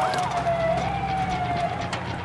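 Police siren wailing, one slow wavering tone that sinks gradually, over the steady low rumble of truck engines.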